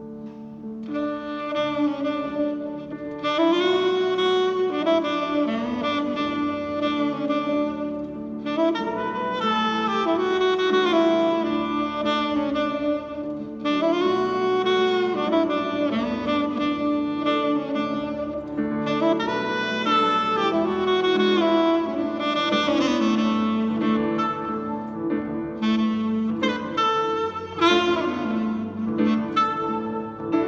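Tenor saxophone playing a lyrical melody in phrases of held and sliding notes over grand piano accompaniment, the saxophone coming in about a second in.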